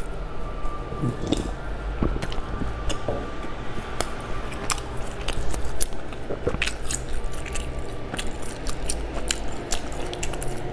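Close-miked biting and chewing of a crisp, crumbly pastry: a run of sharp crunchy clicks, busier in the second half.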